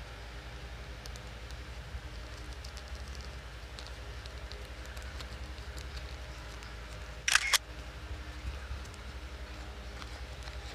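Small plastic packet being handled by fingers: faint scattered crinkles and ticks, with one sharp double crackle about seven seconds in, over a steady low hum.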